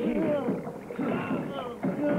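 A man groaning and crying out in pain in drawn-out wordless moans, under interrogation.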